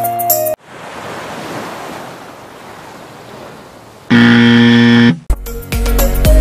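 Background music cuts off about half a second in, leaving the hiss of surf and wind. About four seconds in, a loud, steady one-second buzzer sounds, a wrong-answer sound effect marking a failed attempt, and music starts again near the end.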